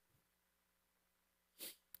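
Near silence, broken near the end by one short, sharp intake of breath on the speaker's microphone.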